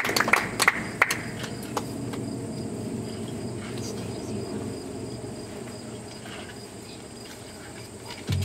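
A steady, high insect drone in outdoor summer ambience, with a few light clicks in the first two seconds and a low background hum that slowly fades.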